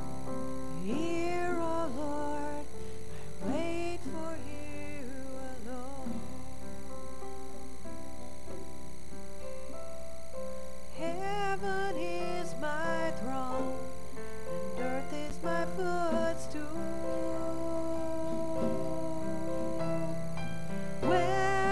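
Live worship band playing a slow song: sung phrases over sustained guitar and keyboard chords, with a mostly instrumental stretch in the middle.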